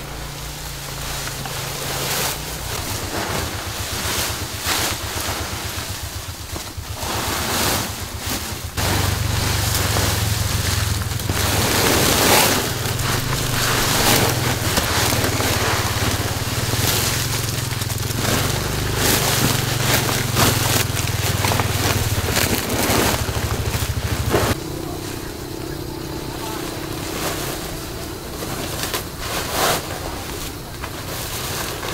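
Woven plastic sack and fresh tea leaves rustling as the leaves are packed into the sack by hand. Underneath runs a steady low hum, which steps louder from about nine seconds in until near the end.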